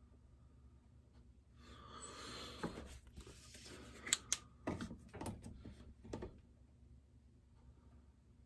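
Quiet workbench handling sounds: a brief rustle about two seconds in, then a run of clicks and knocks as tools and parts are picked up and set down, two sharp clicks just after the middle.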